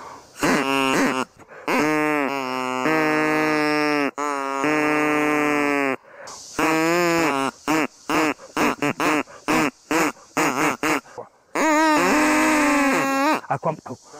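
Homemade pipes cut from arrow bamboo (Pseudosasa japonica), with a reed carved into the bamboo itself, blown in a string of reedy held notes that step and slide in pitch. A run of short quick notes comes in the middle, and there are brief breaks for breath.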